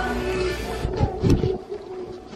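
Low rumble of handling noise on a handheld camera as it is carried about, dropping away about a second and a half in.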